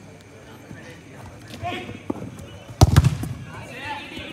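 A football struck hard by a kick, a sharp double thud almost three seconds in, with players' shouts around it.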